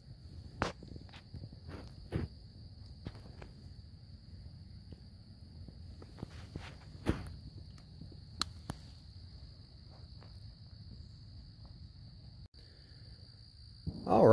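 A steady, high insect trill, like a cricket's, runs throughout. Over it come scattered clicks, knocks and rustles from hands working in wet mud and leaf litter, a few of them sharper.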